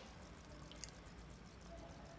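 Very quiet pour of water from a ladle onto par-boiled basmati rice in an aluminium pot, with a tiny drip or clink just under a second in.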